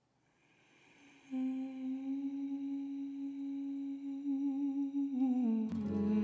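A man humming one long held note with closed lips into a microphone, steady with a slight waver. The note sinks a little near the end as the accompaniment comes in under it.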